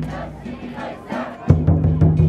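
Festival crowd shouting, then a big drum struck about three times in quick succession from about a second and a half in, each hit low and ringing.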